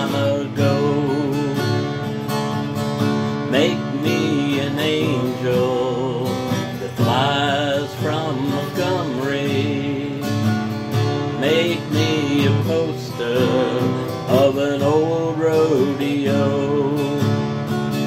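A man singing a slow country-folk song, accompanying himself on a strummed steel-string acoustic guitar.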